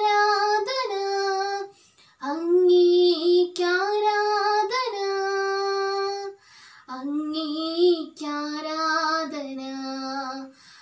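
A girl singing solo and unaccompanied, in long held notes that sweep between pitches. She breaks off briefly about two seconds in and again after about six seconds, then goes on singing.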